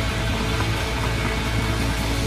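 Oi street-punk band playing an instrumental passage with no vocals: loud distorted electric guitar, bass and drum kit.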